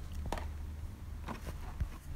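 A few faint clicks and taps of blister-carded toy packaging being handled, over a steady low hum.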